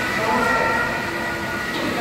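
Police vehicle sirens sounding together in a covered ambulance bay, several steady overlapping tones ringing off the walls, with voices underneath.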